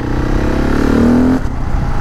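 KTM 690 Enduro R's single-cylinder engine pulling away under acceleration. Its pitch rises for about a second and a half, then drops suddenly as at an upshift and carries on steadier.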